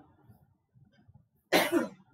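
A man coughs once, a single short burst about one and a half seconds in.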